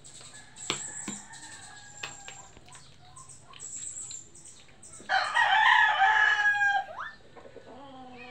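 A single loud crowing call about five seconds in, drawn out for nearly two seconds and gliding up at its end, over faint, quickly repeated high chirps.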